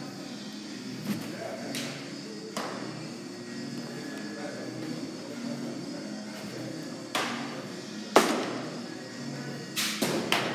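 Several sharp knocks and cracks of baseballs being pitched, hit and caught in an indoor batting tunnel, the loudest about eight seconds in, over steady background music.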